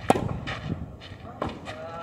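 A tennis racket strikes the ball in a sharp, loud forehand hit, then a fainter hit follows about a second and a half later as the ball comes back. Near the end comes a short, drawn-out voice sound.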